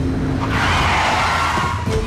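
A car driven hard, its engine running with a heavy rumble, and a loud tyre skid for about a second in the middle as it swerves. Dramatic music plays underneath.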